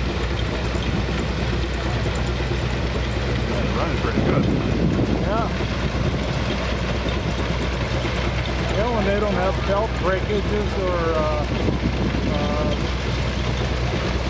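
A Farmall 200 tractor running steadily on the belt, driving an old threshing machine through wheat sheaves: a constant low mechanical drone and hum. Voices talk faintly over it in the second half.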